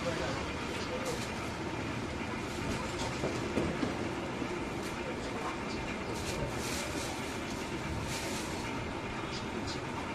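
Steady background din of a busy market or street, with distant voices and a few faint short clicks.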